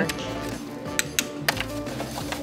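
Oyster shells tapped with an oyster knife: a few sharp clicks, three of them close together about a second in, over background music. The tapping checks each oyster by its sound, since a full one sounds different from an empty one.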